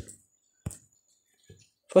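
A single short, sharp click about two-thirds of a second in, a tap on a phone's on-screen keyboard while typing.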